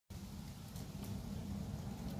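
Faint, steady low rumble of background noise.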